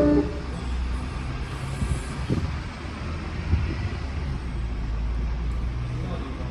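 A song's last held note cuts off right at the start. After it comes the low, steady rumble of city traffic, with a couple of faint knocks.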